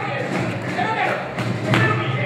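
Voices of a carnival singing group speaking on stage, with two sharp thumps in the second half.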